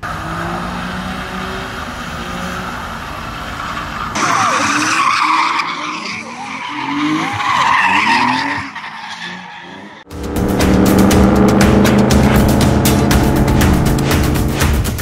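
Nissan 370Z drifting, its V6 held high in the revs over tyre noise. After a cut, another drift follows with tyres squealing and the engine revving up and down. About ten seconds in, music with a steady beat starts suddenly.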